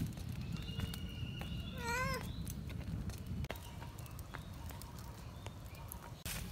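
One short animal call with a wavering, up-and-down pitch about two seconds in, over a steady low background rumble.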